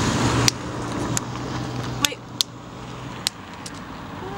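Steady low hum of a vehicle engine that fades out after about three seconds, with five sharp clicks over it.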